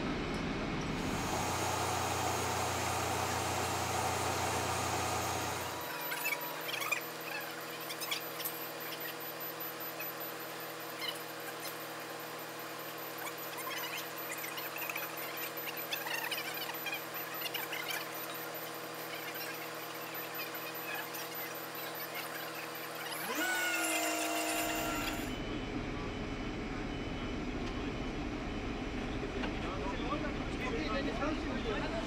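A heavy mobile crane's diesel engine running steadily during a lift, with scattered metallic clicks. A short rising whine comes about 24 seconds in.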